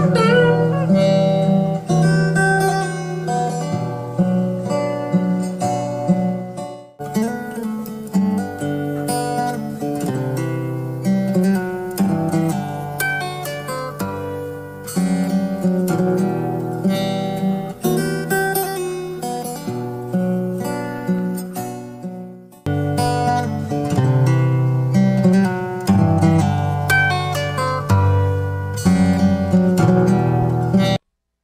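Fingerstyle steel-string acoustic guitar playing a melody over plucked bass notes and chords. The playing breaks off briefly twice, about 7 seconds in and about 23 seconds in.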